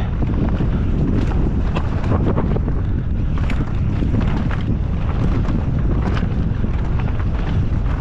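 Mountain bike ridden hard down a rough, rocky dirt trail: heavy wind buffeting on the action camera's microphone over a steady rumble of tyres on loose stone. Frequent sharp clicks and rattles from the bike and flicked-up rocks run throughout.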